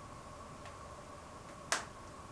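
A single sharp snap near the end, from a hair elastic snapping into place as long hair is tied back, over a faint steady hum.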